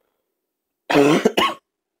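A person coughing: one short cough in two quick parts about a second in.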